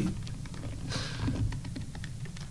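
Light plastic clicks and rattles as the plastic brain piece of an anatomy torso model is pried out of its skull by hand.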